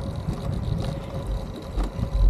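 Wind buffeting the camera microphone and tyre rumble from a recumbent e-trike rolling along a trail, with a faint steady whine underneath.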